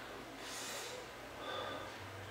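A person's breath while smoking a cigarette: one short, breathy puff about half a second in, followed by a faint mouth sound as the cigarette comes to the lips.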